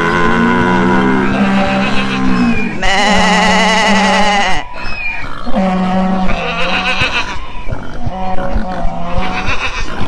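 Animal calls laid over one another: long, wavering pitched calls over lower, steadier ones, coming in four groups with short breaks between them.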